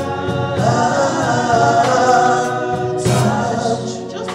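Gospel worship singing through a microphone and PA, a woman's voice holding long, drawn-out notes.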